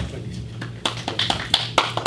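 Handling noise from a handheld microphone being picked up: a run of irregular knocks and rubs through the PA, starting about a second in, over a low hum.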